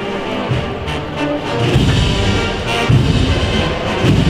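A Spanish wind band (banda de música) of brass, woodwind and percussion playing a slow procession march, its low notes growing stronger about halfway through.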